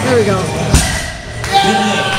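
Voices of people talking and calling out in a large gym hall, with one sharp thump about three quarters of a second in.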